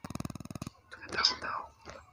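A short buzzing, rasping voice sound lasting under a second, then quiet whispered speech.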